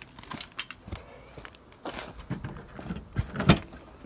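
Keys jangling and a string of light clicks and knocks, with a louder clunk about three and a half seconds in as the Jeep Cherokee XJ's rear liftgate is unlatched and opened.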